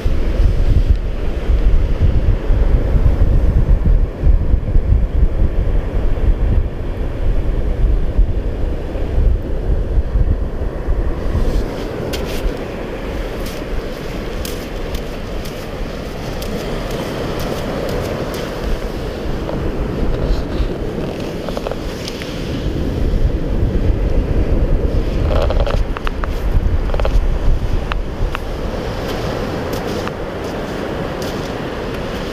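Wind buffeting the microphone, with small waves breaking and washing up the sand close by. The wind rumble is strongest for about the first ten seconds. After that the fizzing wash of the surf comes forward.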